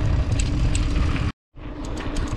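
Wind buffeting the microphone and the rolling rumble of a mountain bike on a dirt road, with a few light ticks. The sound cuts out abruptly for a moment about a second and a half in.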